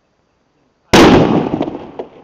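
A 5-litre plastic water bottle filled with oxyhydrogen (HHO) gas exploding: one sudden, very loud bang about a second in, dying away over about a second.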